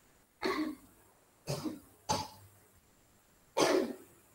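A person coughing: four short, separate coughs spread unevenly over a few seconds.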